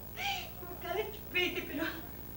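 A woman crying between sentences: three short, high whimpering sobs, the last one the longest.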